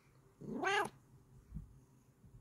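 A Bengal cat gives one short meow, about half a second long, rising in pitch, followed by a faint low bump.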